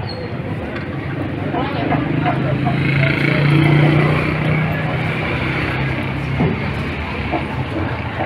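Outdoor street ambience: people's voices nearby over a low, steady engine-like hum that swells to its loudest about four seconds in and then eases.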